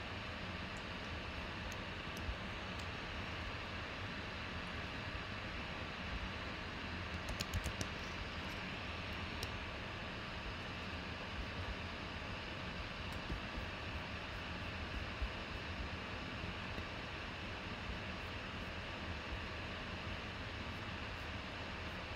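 Steady hiss of room or computer-fan noise, with a few faint computer mouse clicks and keystrokes, including a short run of them about seven seconds in.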